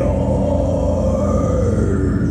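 Live black/doom metal: one long harsh vocal held over heavily distorted guitars and drums, sinking slightly in pitch near the end.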